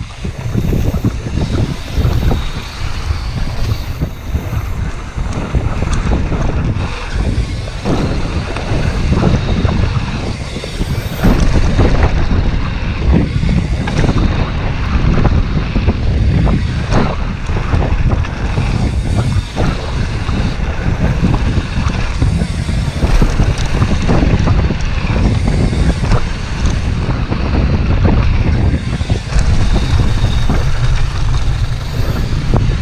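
Wind buffeting an action camera's microphone during a fast downhill mountain-bike run. Under it are a continuous rumble of tyres on gravel and frequent rattles and knocks from the bike over bumps.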